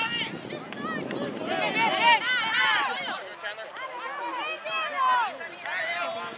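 Indistinct voices of players and sideline spectators calling out across the field, many short shouts overlapping.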